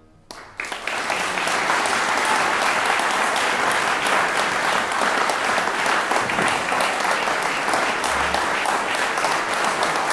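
Audience applauding, breaking out about half a second in and then going on steadily as dense clapping.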